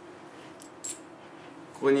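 Two quick, light metallic clinks close together, the second louder: 10-yen coins knocking together in a hand.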